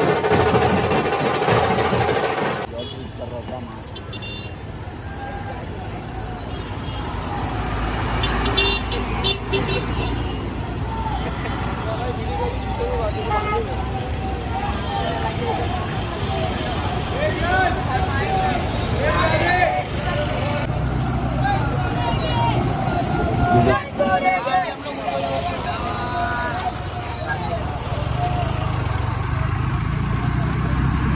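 Dhol drumming that stops sharply about two and a half seconds in, followed by a busy road: vehicle engines running, horns honking and people's voices.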